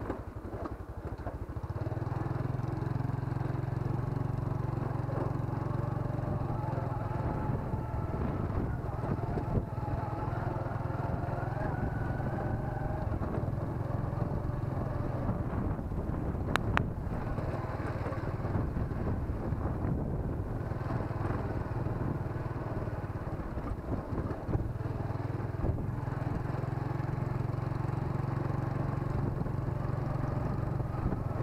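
Motorcycle engine running steadily while riding, its low hum growing louder about two seconds in and then holding even. A single sharp click sounds about halfway through.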